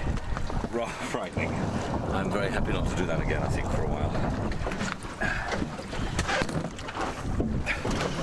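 Sea water splashing around a boat at sea, with wind buffeting the microphone and indistinct voices.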